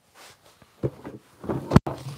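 Shuffling and clothing rustle as a man shifts forward off a plastic toolbox seat to reach the boxes on the floor, with a few soft knocks and a sharp thump near the end.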